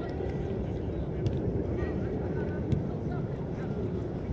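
Footballs being kicked on an artificial-turf pitch, two sharp thuds about a second and three seconds in, over a steady low rumble and faint distant shouts of players.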